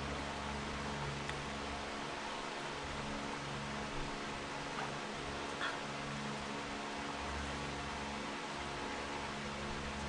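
Steady low mechanical hum with an even hiss, and a couple of faint ticks near the middle.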